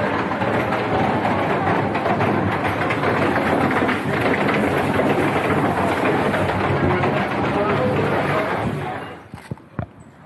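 Chatter of a crowd queuing, mixed with the running of shuttle vans. It cuts off abruptly about nine seconds in, leaving a few faint knocks.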